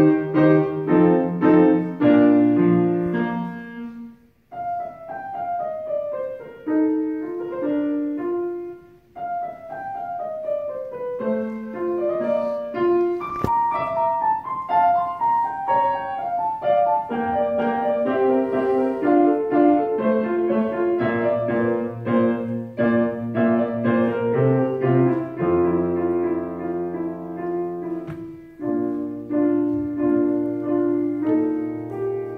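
Solo classical piano played on a Fazioli grand piano, with phrases of runs of falling notes and brief pauses between phrases about four and nine seconds in.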